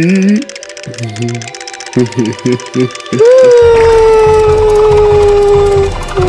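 Animated cartoon cat character's voice: a few short vocal sounds, then, about three seconds in, one long, loud, held scream that falls slowly in pitch, over background music.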